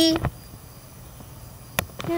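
A child's drawn-out, sing-song voice trails off at the start. Then comes a faint steady background with a thin high tone, and one sharp click near the end.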